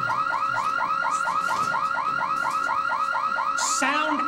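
Electronic security alarm sounding loudly, a fast repeating warble that rises and falls about six or seven times a second. A short hiss comes near the end.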